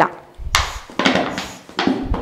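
A plastic bottle taped onto a gas stove's burner pipe is squeezed hard about three times. The plastic crackles with each squeeze as air is forced through the pipe to blow out fine dust that can keep the burner from burning properly.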